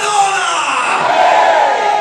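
A man's voice shouting into a handheld microphone in two long, high-pitched cries that rise and fall in pitch, too drawn-out to be ordinary speech.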